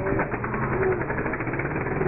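ATV engine running steadily.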